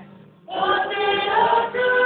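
Choir singing a waiata in sustained, harmonised notes. The voices come in together and loud about half a second in, after a brief soft lull.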